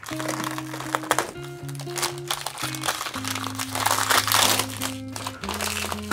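Crinkling of a metallic foil plastic packet being handled and torn open by hand, over background music with held low notes.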